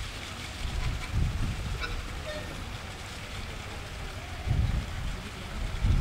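Wind buffeting the camera microphone: an uneven low rumble that surges about a second in and again near the end.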